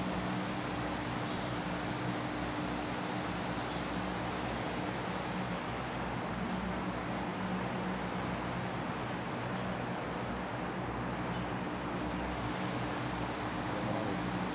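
Steady whirring hiss of wall-mounted electric fans in a large stone hall, with a faint steady low hum underneath.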